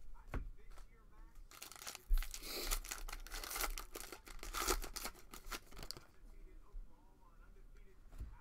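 Plastic wrapper of a 2021 Panini Prestige football card pack being torn open by hand, a dense crinkling crackle from about a second and a half in until about six seconds, sharpest near the start of the tear.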